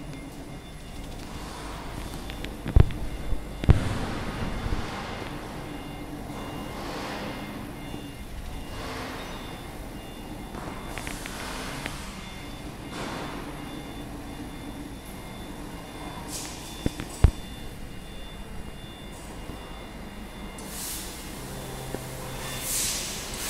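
Laser cutting machine running as its cutting head travels over the sheet: a steady machine hum with a faint high whine and hiss that swells and fades every couple of seconds. A few sharp knocks stand out, two about three to four seconds in and two more near the seventeen-second mark.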